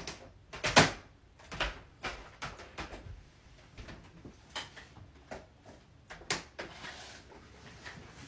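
A door being eased open, with a string of irregular knocks, clicks and scuffs on a wooden floor as someone creeps and crawls through it; the loudest knock comes just under a second in.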